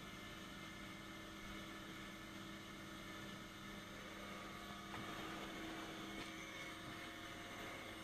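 Faint steady electrical hum with a low whir beneath it: the room tone of the clinic, with no distinct event.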